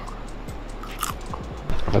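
Chewing a mouthful of fried yuca with peanut sauce, a few short soft clicks, over background music.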